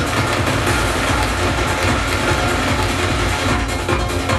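Psytrance playing in a DJ mix from CD decks, with a heavy, steady bass.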